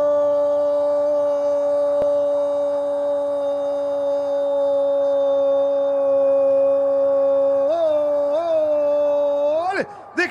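Radio football commentator's long goal cry: one loud note held at a steady pitch for nearly ten seconds, wavering twice near the end before breaking off.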